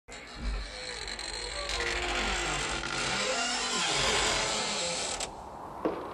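A long, wavering creak over a hiss, which cuts off suddenly about five seconds in, followed by a single sharp knock like a footstep near the end.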